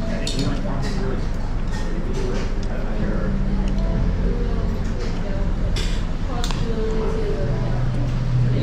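Café table sounds: a steady low hum with voices in the background and a few short clinks of glass and crockery.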